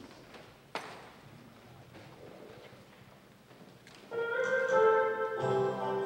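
Quiet church room with faint ticks and one sharp knock just under a second in. About four seconds in, an organ starts playing held chords, and the music carries on.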